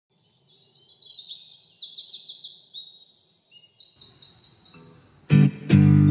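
Birds chirping in quick runs of short, high notes over faint outdoor background noise. About five seconds in, the song's acoustic guitar comes in with loud strummed chords, louder than the birds.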